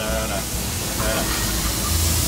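Marinated meat sizzling on a hot grill grate, a steady hiss that grows louder in the second half as more strips are laid on.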